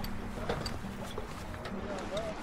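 Wind and water rushing past a sailboat under way: a steady noise, with a few light clicks and faint crew voices near the end.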